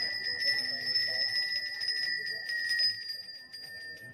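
A Balinese priest's hand bell (genta) rung without pause, a steady high ringing, with voices beneath it.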